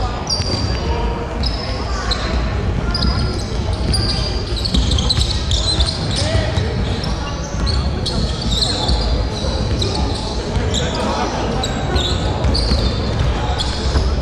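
Basketball game on a hardwood court in a large, echoing sports hall: a ball bouncing and many short, high-pitched sneaker squeaks as players move, over steady hall rumble.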